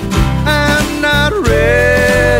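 Country-Americana song with sung vocals over steady band backing. A short sung phrase gives way to a long held note near the end.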